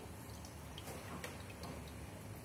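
Aquarium sponge filter running: air bubbles rising and breaking at the water surface make faint, irregular clicks, a few a second, over a low steady hum.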